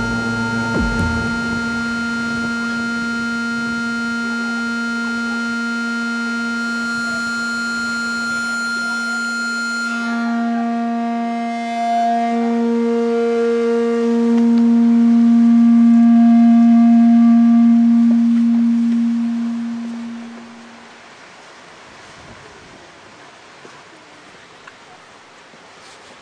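Sustained electronic drone: one low held note with a stack of steady overtones that swells louder midway, then fades out about twenty seconds in, leaving a faint hiss.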